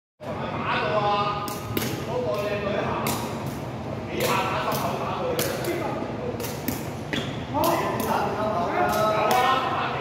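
Jianzi shuttlecock kicked back and forth: repeated sharp taps at uneven intervals, echoing in a large tiled covered space, over people talking and calling out.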